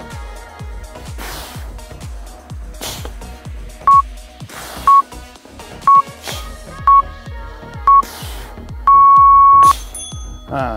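Interval timer counting down the last seconds of a work period: five short beeps a second apart, then one longer beep of the same pitch as the interval ends. Background music with a steady beat plays underneath.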